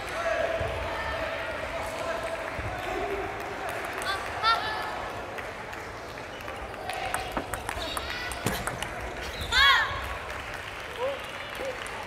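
A table tennis rally: a quick run of sharp ball clicks off rackets and table about seven to nine seconds in. Short rubber-sole squeaks on the court floor come with it, the loudest a high squeal just before ten seconds.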